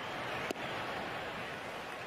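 Steady ballpark crowd noise with one sharp pop about half a second in, a pitched baseball smacking into the catcher's mitt.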